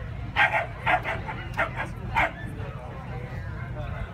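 A dog barking in about five short, sharp yaps over two seconds, the first the loudest, over a steady low background rumble and voices.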